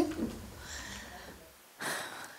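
Breath sounds close to a headset microphone: a faint breathy rush about a second in, then a short puff of breath near the end. A low hum under them cuts off suddenly about a second and a half in.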